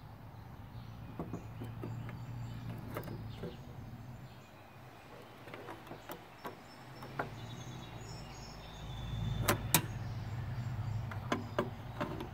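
Metal screwdriver shaft clicking and scraping against the microwave's sheet-steel chassis and high-voltage capacitor terminals while it is worked in to discharge the capacitor, with scattered light clicks and two sharper ones about nine and a half seconds in, over a low rumble.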